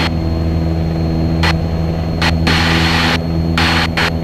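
Cessna 177 Cardinal's piston engine and propeller running at takeoff power during the climb, a steady drone heard inside the cabin. Bursts of hiss cut abruptly in and out a few times over it.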